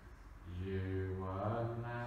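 A man's low voice holding one long, drawn-out, chant-like sound, starting about half a second in and lasting about two seconds.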